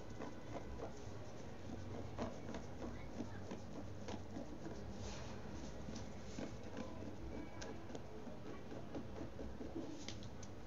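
Fingernails scratching and picking at a DTF heat-transfer print on fabric, peeling the film away once retarder has weakened its adhesive. The result is a faint, irregular run of small scratches and ticks.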